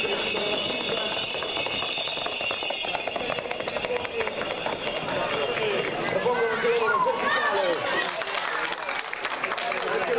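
Crowd of spectators talking and calling out, with the hoofbeats of two galloping horses on a paved street heard from about three seconds in as the horses pass.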